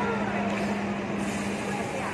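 A steady low hum over an even wash of outdoor noise, with faint voices; the hum stops shortly before the end.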